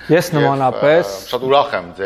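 A man speaking, in one continuous stretch of talk.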